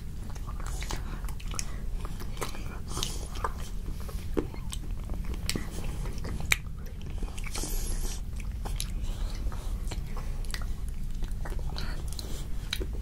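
Close-up eating sounds of Hershey's chocolate-coated almond ice cream bars being bitten and chewed. Many small, sharp cracks and crunches of the chocolate shell come at irregular moments, along with chewing.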